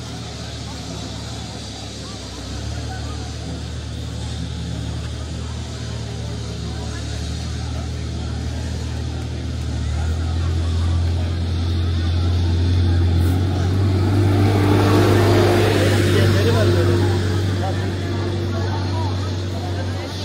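A motor vehicle's engine running with a low steady hum. It grows louder through the second half and is loudest about fifteen seconds in, with people talking.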